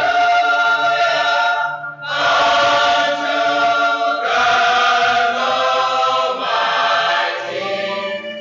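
A choir of young men and women singing in harmony, in long held chords of about two seconds each with short breaks between them.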